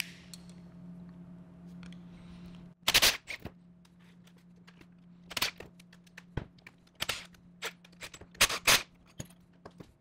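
Cordless impact driver hammering in several short bursts, the first and longest about three seconds in, backing out the bolts that hold the top housing of an auto air valve.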